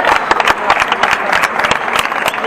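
Spectators clapping and calling out: many separate hand claps in quick succession with voices mixed in.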